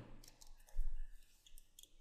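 Clicks from a computer keyboard and mouse: a few sharp, light clicks spread over two seconds, and one duller thump just under a second in.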